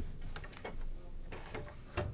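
A few scattered light knocks and clicks of handling at an upright piano's open lower case and pedal.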